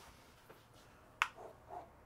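One sharp click a little past halfway, followed by a couple of faint short sounds, over quiet room tone.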